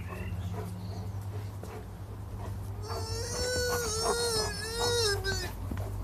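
German Shepherd giving one long, wavering whine of about three seconds, starting about halfway in, excited at being teased with a broom.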